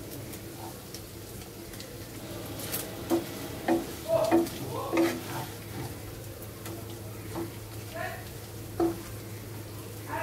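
Beef pieces sizzling as they dry-fry in a nonstick pan without water, stirred with a wooden spatula that scrapes and knocks against the pan. There is a run of knocks about three to five seconds in and one more near the end.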